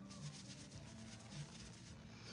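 Makeup brush bristles, damp with brush cleaner, wiped back and forth on a soft cloth: faint, repeated rubbing.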